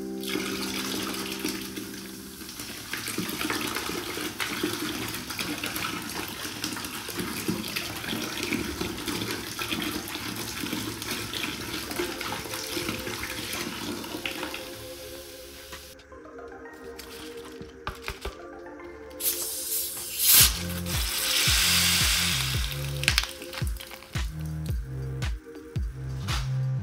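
Soft drink poured in a steady stream from a plastic bottle into a bucket, a continuous splashing pour lasting about fourteen seconds. Then electronic music with a heavy pulsing bass takes over.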